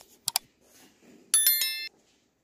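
Two sharp clicks, then a brief bright bell-like ringing of several tones struck in quick succession, about one and a half seconds in and lasting about half a second.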